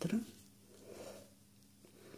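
A woman's voice finishing a spoken word at the very start, then a soft breath about a second in, over a faint steady low hum.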